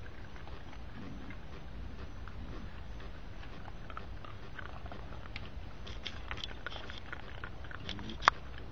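Raccoons chewing and crunching dry kibble and shuffling in pine needles: scattered small crunches and clicks, growing busier over the last few seconds, over a steady low rumble.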